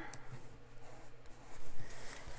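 Soft rubbing and rustling of paper as a sticker is pressed onto a planner page, with a slightly louder paper sound near the end.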